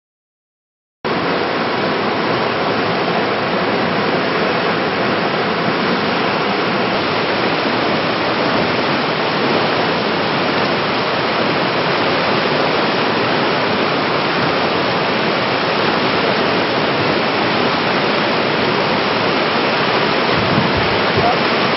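Whitewater river rapids rushing: a loud, steady wash of water noise that cuts in suddenly about a second in and holds without a break.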